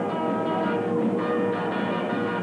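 Early rock-and-roll band music led by electric guitar, playing steadily.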